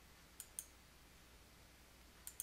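Two faint computer mouse clicks in quick succession, about half a second in, over near silence.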